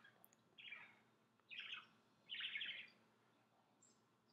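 Three faint, short bird chirps about a second apart, each sliding slightly downward.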